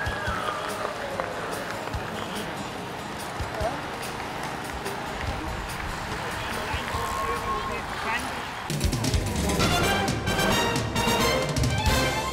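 Street noise with scattered voices as a large group of road cyclists rides past. About three-quarters of the way through it gives way abruptly to music with a steady beat.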